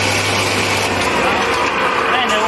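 Mini rice huller-polisher (UN6N40-LT) running, its 3 kW single-phase electric motor driving the husking head as it hulls paddy into brown rice: a loud, steady whirring with a low hum that drops out about halfway through.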